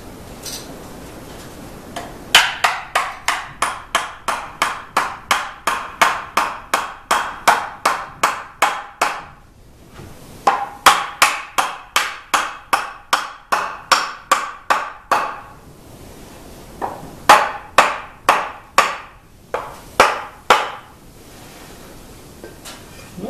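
Wooden mallet rapidly tapping a tight tenon into its mortise, wood on wood: two long runs of about three blows a second with a short pause between, then a few more spaced blows near the end.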